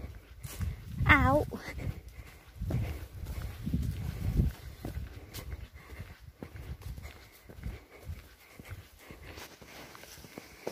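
A dog gives one short wavering whine about a second in, over footsteps and low rumbling on a dirt path.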